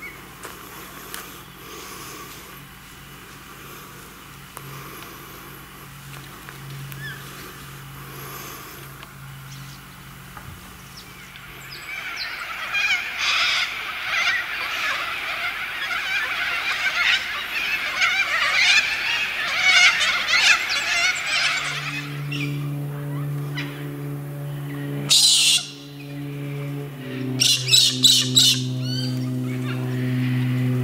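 A flock of birds chattering and calling loudly for about ten seconds, after a quieter stretch of outdoor ambience with a low hum. Piano music then comes in, and a sulphur-crested cockatoo screeches over it twice.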